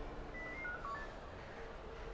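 A quick run of short, faint electronic beeps at changing pitches, like keys pressed on a phone keypad, over quiet office room tone.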